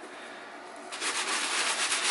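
A hand brush scrubbing a wet, foamy white Adidas Ultra Boost sneaker with cleaning solution: faint at first, then from about a second in, quick back-and-forth bristle strokes.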